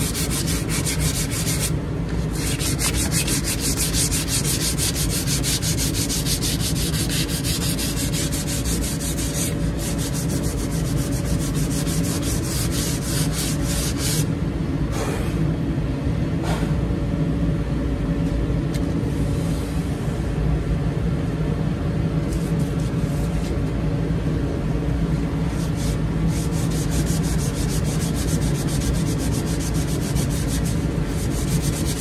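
Sandpaper rubbed by hand along a wooden shovel handle in quick, even back-and-forth strokes, with a short break about halfway. This is the coarser first sanding to bring a neglected, weathered handle back to bare wood.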